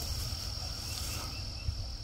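Steady evening insect chorus, a continuous high-pitched trill of crickets or katydids, over a low rumble on the microphone.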